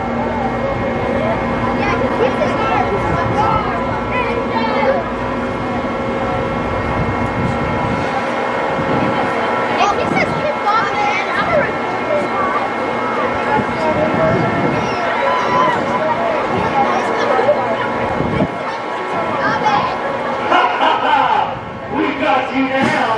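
Riders' and onlookers' voices over the steady mechanical whirr of a Vekoma Boomerang roller coaster's lift hauling the train up its tower. A low rumble fades out about eight seconds in.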